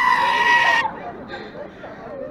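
A goat screaming: one long, loud bleat held at a steady pitch that cuts off about a second in, followed by faint street chatter.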